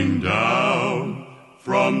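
Southern gospel male vocal group singing a hymn in close harmony, holding chords with vibrato, from a 1964 vinyl LP recording. The sound fades briefly a little past the middle, then the voices come back in strongly near the end.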